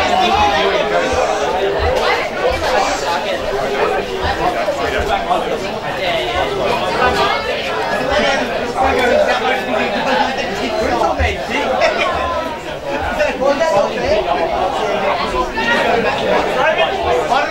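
Continuous overlapping chatter of several people talking at once near the microphone, with no single voice standing out. Irregular low rumbles sit underneath.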